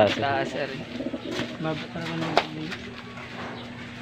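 Domestic pigeons cooing, a few low coos about halfway through.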